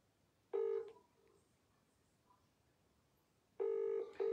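Ringing tone of an outgoing phone call that has not yet been answered, heard through the phone's speaker: a short steady buzz about half a second in, then the first of a double buzz near the end, in the British double-ring pattern.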